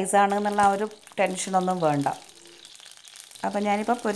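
A woman talking, with a pause of about a second and a half from about two seconds in. Under it there is a faint steady sizzle of oil heating in an iron kadai.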